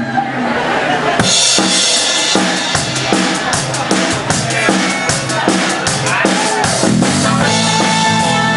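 Live band starting a Cajun boogie number. A drum kit opens with snare hits, and the full band with cymbals and electric guitar comes in about a second in. A harmonica enters with a long held note near the end.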